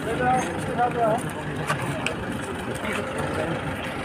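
Unclear voices of people talking, heard over a steady bed of street and traffic noise, with a couple of faint clicks in the middle.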